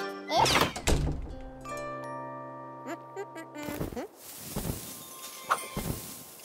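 Cartoon soundtrack: soft thuds with a gliding cartoon-character voice, then a few gentle held music notes, then more soft thuds near the end.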